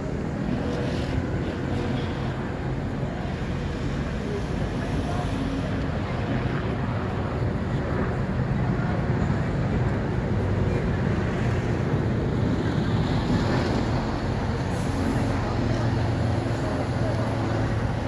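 Steady rumble of city street traffic, with vehicle engines running, growing a little louder about halfway through, and a murmur of people's voices.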